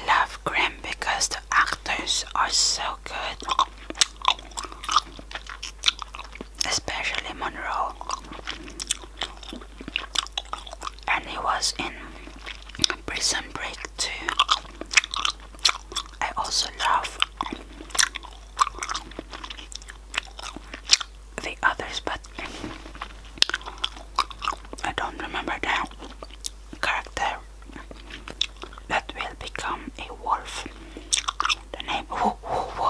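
Close-miked chewing of gum, with wet mouth smacks and many quick, irregular clicks throughout.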